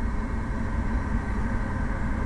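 Steady deep rumble of a Falcon 9 rocket's first-stage engines under full power during ascent.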